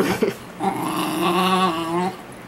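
Small terrier-type dog growling at a toy BB gun pushed toward its face: a defensive warning growl. A brief sharp sound comes just after the start, then one long wavering growl from about half a second in.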